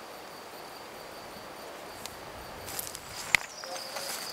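An insect trilling steadily over open-field ambience. Near the end come light rustling and a sharp click from the insect netting being handled.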